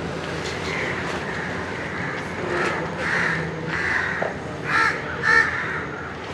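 Harsh bird calls repeated every half second to a second, the two loudest about five seconds in.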